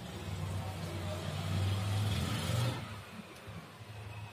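A road vehicle passing by: a low rumble that builds for about two and a half seconds and then fades away.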